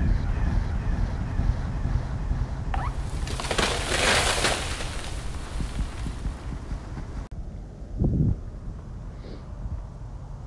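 Handheld camcorder outdoors: wind rumbling on the microphone, with a loud rush of hiss about three to five seconds in. About seven seconds in the sound drops away suddenly, and a short low thump follows.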